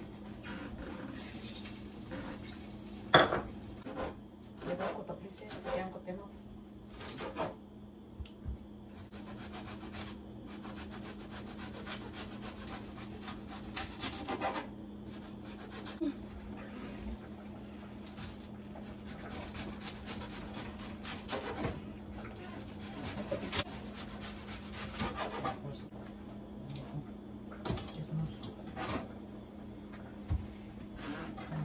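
Kitchen clatter: dishes, a bowl and utensils knocking and scraping, with a knife cutting a vegetable over a bowl, over a steady low hum. The sharpest knock comes about three seconds in.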